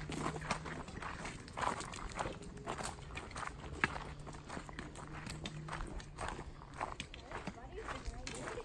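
Footsteps crunching on a gravel trail, several people walking at an uneven pace. Among them are sharper taps, such as one a little before four seconds in, from walking sticks striking the stones.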